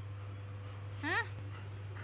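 A golden retriever giving one short, high whine about a second in.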